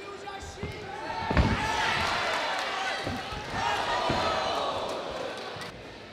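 A heavy thud about a second and a half in as a fighter is slammed onto the cage canvas, with a few smaller thuds around it. The crowd shouts and cheers loudly after the slam.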